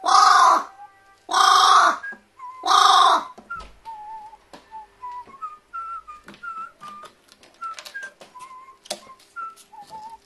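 Carrion crow giving three loud caws in the first three seconds, each a little under a second long. A whistled background tune with light clicking runs throughout.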